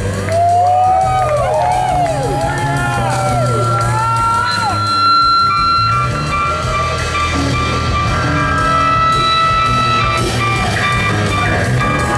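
Live blues-rock band playing an instrumental passage. An electric guitar bends and slides its notes up and down over bass and drums for the first few seconds, then holds long sustained notes.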